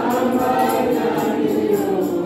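A youth choir singing a gospel song in the Kewabi language in several voices, held notes gliding from one to the next, with a tambourine keeping a steady beat.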